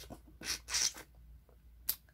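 Mouth sounds of eating passion fruit pulp and seeds: two short wet bursts about a third of a second apart, small clicks, and a sharp click near the end.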